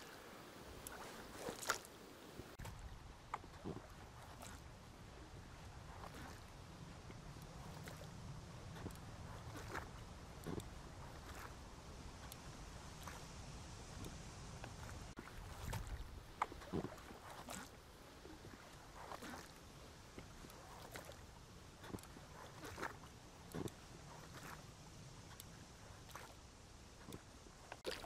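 Faint sounds of an inflatable rowing boat being rowed slowly: quiet splashes and light knocks from the oars, irregular, every second or two, over a low steady hush of water.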